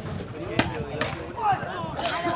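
A volleyball struck by hand in a serve, heard as two sharp smacks, about half a second and about a second in; this serve ends in the net. Spectators' voices carry on around it.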